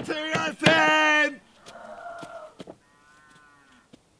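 Several loud, drawn-out moo-like calls, the loudest about a second in, fading to weaker ones later. A few knocks on a wooden door fall between them.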